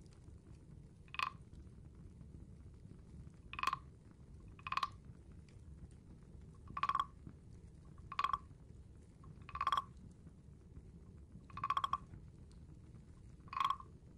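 Large carved wooden frog (frog guiro) rubbed along its ridged back, giving short, pitched croaks. There are eight croaks, spaced irregularly about one to two seconds apart; the one near the end is a little longer.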